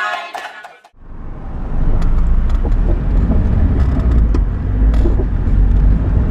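Steady low rumble of a taxi's engine and road noise, heard from inside the moving car; it begins about a second in, as music fades out.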